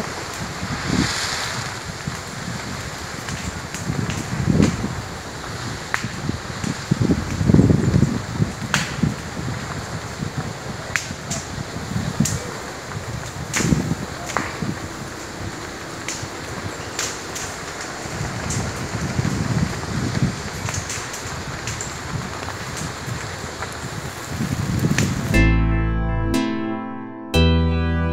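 Bush fire burning through trees and undergrowth: scattered sharp pops and crackles over a steady rushing noise, with gusts of wind on the microphone. Plucked-string music cuts in about a second before the end.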